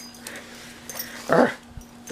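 A pug, busy mauling a stuffed toy, gives one short whining grunt about a second and a half in.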